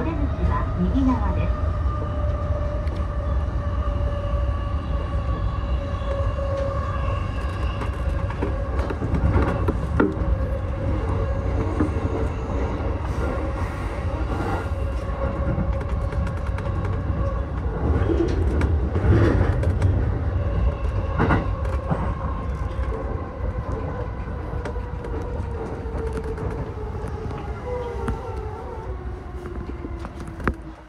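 Electric train motor whine on a JR East E233-8000 series, heard from the driver's cab, sinking slowly in pitch as the train slows into a station, over a steady rumble of wheels on rail. A few sharp knocks come from the wheels over rail joints.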